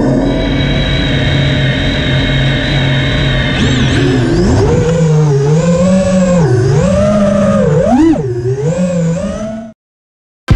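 Motor of a radio-controlled model running, steady for the first few seconds, then its pitch rising and falling repeatedly as the throttle is worked, before cutting off abruptly near the end.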